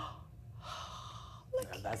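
A woman's long, breathy gasp of delight, with speech starting near the end.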